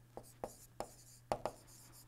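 Faint, short taps and scratches of a stylus writing on a tablet screen, five or six light strokes spread over two seconds, over a faint steady low hum.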